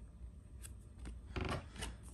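Faint handling of trading cards and foil card packs: a few soft rubs and light taps in the second second.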